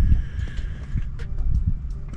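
Low, uneven rumble with a few light clicks from a handheld camera's microphone being handled.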